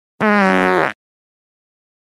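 A short edited-in sound effect: one pitched tone sliding slightly downward for about three-quarters of a second, starting and cutting off abruptly.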